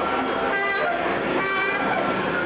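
Animatronic dark-ride scene audio: many overlapping pitched voices and sound effects at a steady level, with no single sound standing out.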